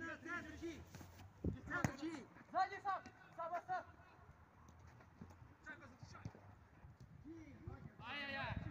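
Footballers shouting to each other across an outdoor pitch, with two sharp thuds of a football being kicked about a second and a half in.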